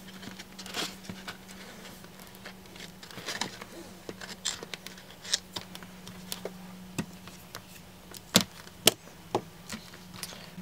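Black electrical tape being wrapped around the seam of a cut plastic soda bottle, with scattered crinkles and clicks of the thin plastic being handled, and two sharper knocks near the end.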